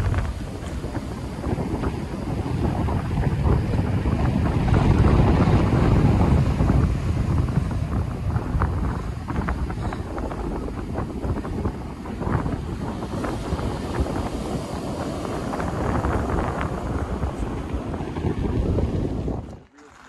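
Heavy wind buffeting the microphone over ocean surf breaking on a beach, swelling and easing over several seconds; it cuts off suddenly near the end.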